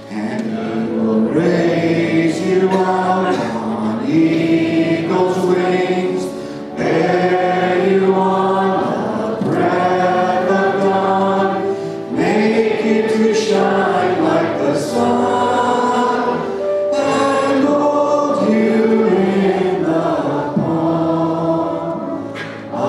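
A congregation singing a hymn together, led by a man singing into a microphone, in sustained phrases with brief breaks between lines.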